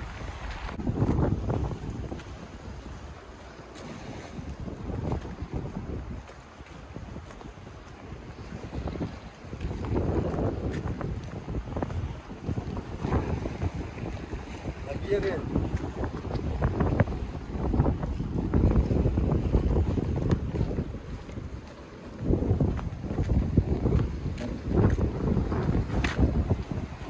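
Wind buffeting the microphone in uneven gusts, over the sea washing against the shore.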